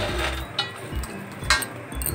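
Roasted peanuts and sesame seeds rustling in a steel plate as they are mixed by hand, with one sharp clink against the steel about one and a half seconds in.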